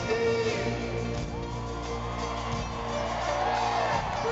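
Live rock band playing on an arena stage, held chords under a voice that glides up and down.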